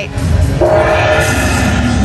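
Dragon Link Panda Magic slot machine playing its Lucky Chance Spin sound effect: a sustained, horn-like chord of steady tones that swells in about half a second in and holds, over the low background din of a casino floor.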